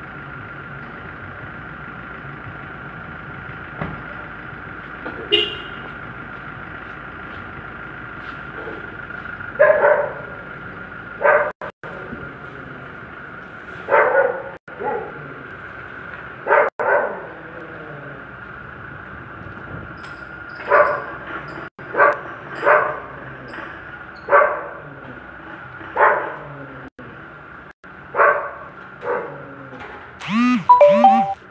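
A dog barking repeatedly, about a dozen short barks at irregular gaps, over a steady background hum.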